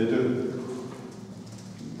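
A man's voice saying "это" and trailing off in a drawn-out hesitation, then a quieter pause.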